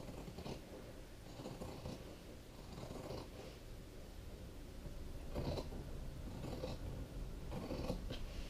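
Fabric scissors snipping through the layered edge of a quilted placemat (cotton top, batting and backing), a series of short cuts at an uneven pace as the blades work around a curve.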